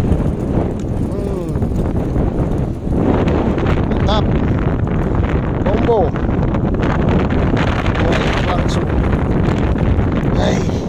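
Strong wind buffeting the microphone, a steady loud rush, with a person's voice heard briefly a few times.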